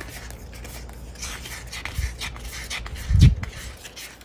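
Paper sticker sheets rustling and rubbing as the pages of a sticker book are leafed through, with a dull thump about three seconds in.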